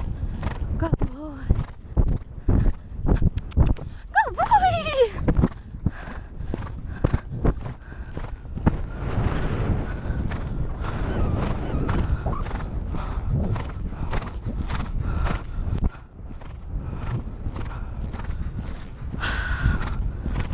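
A horse's hoofbeats drumming on turf at speed, with wind rushing over the helmet-camera microphone. About four seconds in there is one brief call that falls in pitch.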